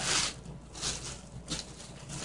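Clear plastic bag crinkling and rustling as it is handled, in a few short bursts.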